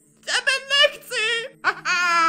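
A high-pitched cartoon character's voice making three wordless wailing cries in a row, each bending up and down in pitch, over a steady low hum.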